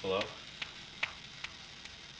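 A brief voiced murmur right at the start, then faint crackling hiss with a few scattered soft clicks.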